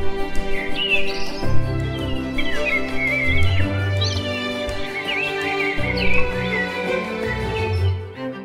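Slow background music of long, held low notes, with a songbird singing warbling, gliding phrases over it.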